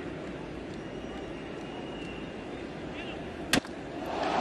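A steady ballpark crowd murmur, cut about three and a half seconds in by one sharp crack of a wooden bat striking a pitched baseball. The crack marks solid contact: a high drive to left field.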